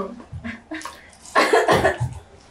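A person's loud, breathy burst of breath or cough about a second and a half in, after fainter breathy sounds, from someone reacting to the burn of very spicy food.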